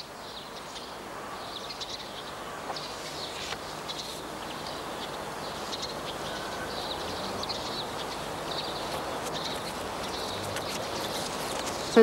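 Small birds chirping again and again over a steady outdoor background hiss that slowly grows a little louder.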